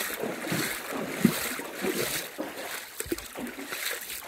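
Water sloshing and splashing irregularly in a shallow, rocky creek, with wind buffeting the microphone.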